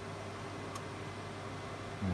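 Steady hum and hiss of equipment fans in a small room, with one faint keyboard click about a third of the way in.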